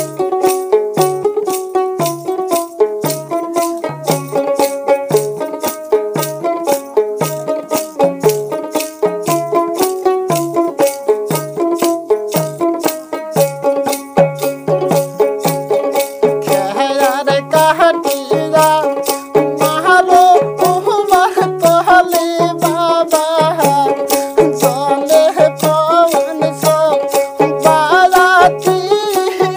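Instrumental Bengali folk wedding-song music: a plucked string melody over a steady beat of drum and rattling percussion. About halfway through, a second melody line joins higher up, wavering in pitch.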